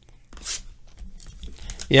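Clear plastic shrink wrap being torn and peeled off a sealed trading-card box, with irregular crackles and crinkling, one sharper rip about half a second in. A man says "yeah" at the end.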